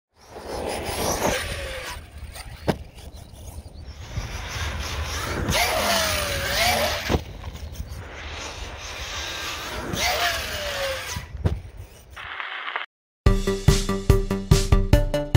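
An Arrma Outcast 6S RC car's electric motor whines three times as it speeds up, its pitch rising and falling, with a sharp knock after each run. Electronic music with an even beat starts about a second before the end.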